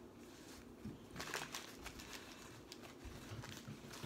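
Faint rustling and crinkling of a paper sandwich wrapper as a sandwich is handled on it, loudest a little over a second in, with a few small clicks.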